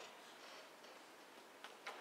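Near silence: the room tone of a hall, with two faint clicks close together near the end.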